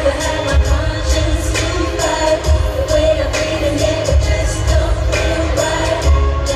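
Live pop music from a girl group and band: sung vocals over drums with a steady beat and a heavy, booming bass, recorded from the audience in an arena.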